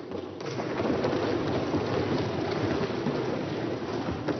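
Applause from the members in a parliamentary chamber, a dense spread of many overlapping claps that begins as a speech ends and eases off near the end.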